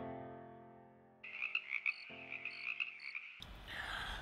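A sampled grand piano chord from the Radical Piano software instrument dies away over the first second. Then a high, rapidly flickering sound comes in, with another piano chord sustaining underneath.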